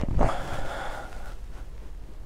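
A short breathy rush of air, like an exhale or snort, starting just after the beginning and fading out over about a second.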